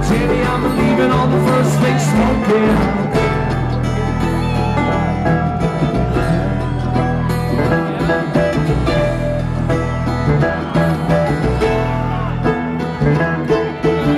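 Live bluegrass string band playing an instrumental passage, with mandolin, sliding dobro and strummed acoustic guitar over a steady bass line.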